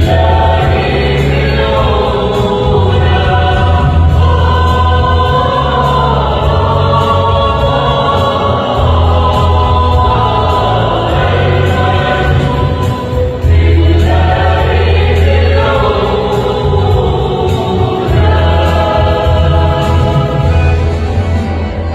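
Mixed choir of women's and men's voices singing a Christmas hymn together, held phrases shifting every few seconds, over a steady deep bass accompaniment.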